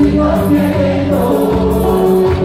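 Live tropical dance band with saxophones, electric bass and singing voices, playing loud through the stage PA, with held pitched notes over a pulsing bass line.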